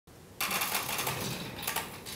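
Casters of two wheeled office chairs rolling across a hard floor as the chairs are pushed apart, starting abruptly about half a second in and slowly fading.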